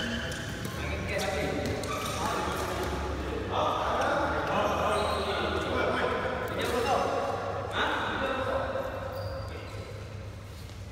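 Several people talking, their voices echoing in a large sports hall.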